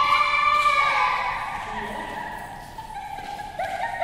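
A child's long, high-pitched shout held for a second or so and fading away, followed near the end by short calls, ringing in a large hard-walled hall.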